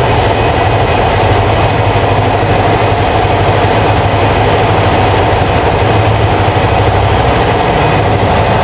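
A motor running steadily: a loud, even drone with no change in pitch.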